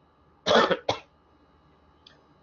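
A man coughing: one short harsh cough about half a second in, followed at once by a brief second catch.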